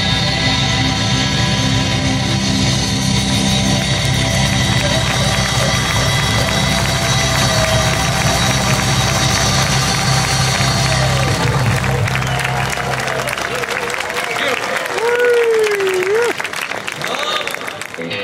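Live band with electric guitar and bass playing a song that ends about twelve seconds in. The audience then applauds and cheers, with one rising-and-falling call over the applause.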